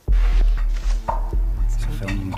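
Quiz-show clue timer music: a low, pulsing electronic bed that starts suddenly as the first clue is revealed, marking the start of the team's thinking time.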